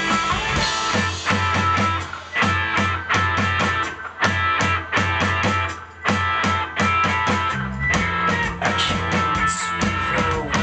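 Rock band playing live: electric guitars over a driving drum-kit beat in an instrumental passage with no singing. The band drops out for a moment three times, about two, four and six seconds in.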